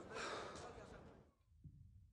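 A faint, breathy voice sound, like a soft sigh or a low spoken murmur, lasting under a second and fading away, followed by near silence.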